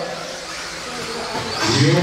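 Electric modified-class 2WD RC buggies running on an indoor dirt track, heard as a steady, noisy hum of motors and tyres in a large hall. The announcer's PA voice comes back near the end.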